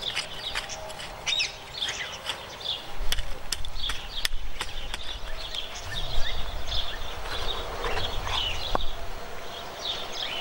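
Small birds chirping and singing, with a few sharp clicks of a hand trowel working the soil in the first half. A low rumble sets in about three seconds in.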